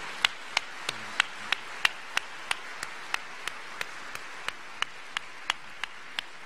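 Audience applauding, with one pair of hands clapping close and steadily, about three claps a second, over the general applause.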